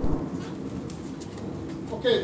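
Low, indistinct murmur of voices from an audience in a large hall, with a few faint clicks.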